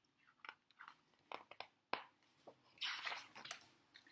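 A hardback picture book being handled and its page turned: scattered small clicks and taps, then a short papery rustle about three seconds in.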